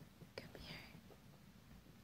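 Near silence, with one short soft whisper about half a second in: a person quietly coaxing a dog.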